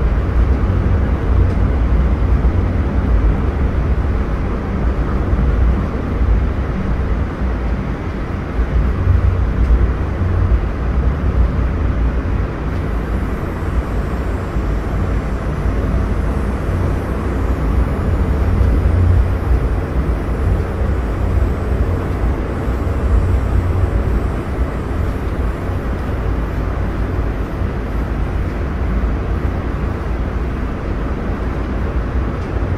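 Inside a light rail car: a steady low rumble with an even wash of running noise, the sound of the car's running gear and motors on the track.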